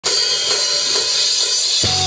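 Live rock band: a drum kit's cymbals ring in a dense wash with a few drum strokes, then the bass and electric guitars come in on a held chord near the end.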